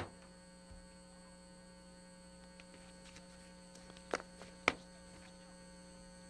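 Faint, steady electrical hum of a few fixed tones, with two short clicks about half a second apart past the middle.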